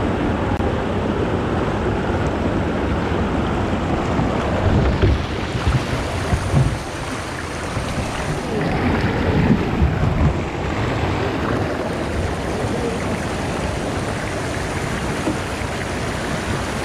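Shallow river water rushing steadily over a rock ledge close to a water-level microphone. Heavier splashing comes in bursts about five to seven seconds in and again around ten seconds, as a kayak tips over and the paddler struggles in the current.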